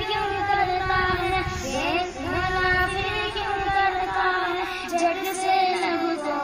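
A boy singing an Urdu naat, a devotional poem in praise of the Prophet, in long held notes that glide up and down between phrases.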